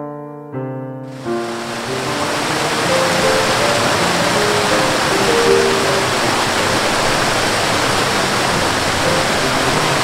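Soft piano music, joined about a second in by the steady rush of a waterfall, which stays loud while single piano notes carry on over it.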